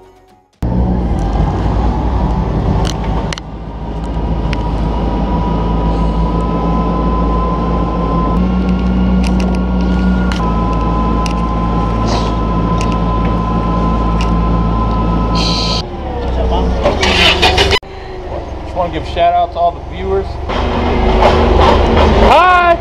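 Propane-fuelled Toyota forklift engine running steadily as the forklift drives, its pitch shifting slightly a couple of times. For the last several seconds it gives way to a louder, busier mix of sounds.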